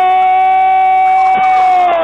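A radio football commentator's long, held goal cry: one sustained note at a steady high pitch, beginning to fall near the end. The sound has the narrow, thin quality of an AM radio broadcast.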